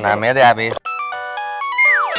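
A man speaks briefly, then about a second in an electronic chime tune begins: clean, steady tones stepping from note to note like a doorbell or ringtone, with a quick falling whistle-like glide near the end.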